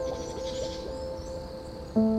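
Soft, slow piano music: a single note is held and slowly fades, and new notes are struck at the very end. Faint high chirping is mixed in about half a second in.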